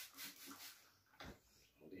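Near silence with faint rubbing and handling of anti-bacterial wet wipes, and one soft knock a little over a second in.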